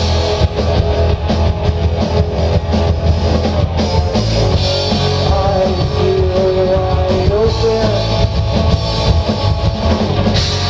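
Live rock band playing, with two electric guitars, electric bass and drum kit, at steady full volume without a break.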